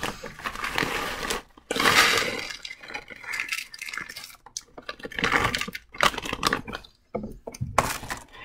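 Granules from a cut-open instant cold pack poured out of the pack's plastic bag into a plastic bowl. It comes as an irregular run of clinking clatter and crinkling plastic, loudest about two seconds in.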